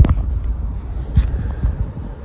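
Wind rumbling on the phone's microphone, with a sharp knock at the very start and a few softer thumps about a second in, from the car door and someone climbing into the driver's seat.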